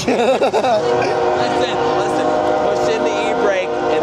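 Dodge Caravan minivan's tyres screeching in a parking-brake burnout: a steady, pitched squeal held for about three seconds that fades and drops in pitch near the end, with laughter over it.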